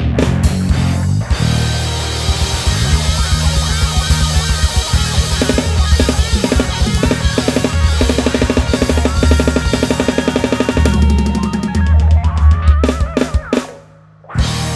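Live rock band playing, with a drum kit driving fast fills and rolls over bass and electric guitar. The music stops abruptly just before the end.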